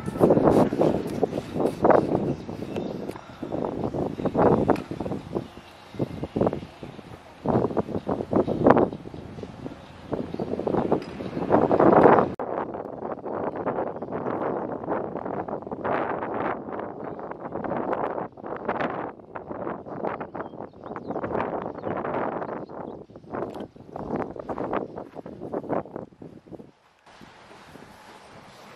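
Wind buffeting the microphone in irregular gusts, rising and falling throughout.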